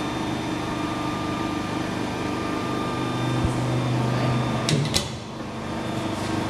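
Boy 22 D injection moulding machine's hydraulic pump motor running with a steady hum. About five seconds in come two sharp clicks, and the low part of the hum drops away.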